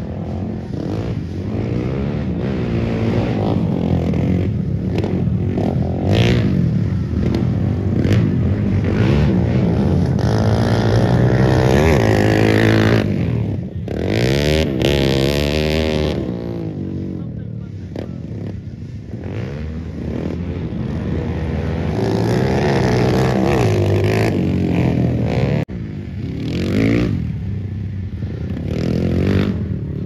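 Dirt bike engines revving on a dirt track, their pitch rising and falling again and again as the riders open and close the throttle.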